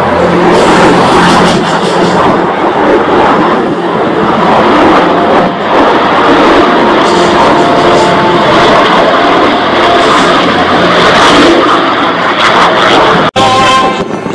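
An F-35A Lightning II and a P-51 Mustang making a close formation pass: a loud, continuous jet engine roar, with the Mustang's piston engine running underneath. It cuts out abruptly for an instant near the end.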